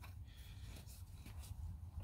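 Faint scraping of a steel pipe fitting being turned by hand onto freshly cut 3/4-inch pipe threads, over a low steady hum. The fitting binds without taking even one full turn: the threads are cut off-size.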